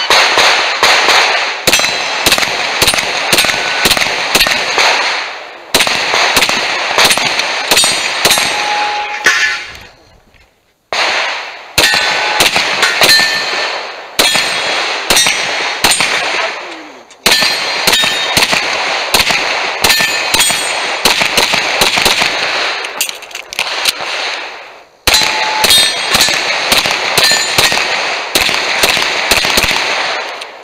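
Semi-automatic gunfire from a USPSA stage run: strings of fast shots, with steel targets clanging and ringing on hits. The shooting stops briefly three times between strings, for about a second each.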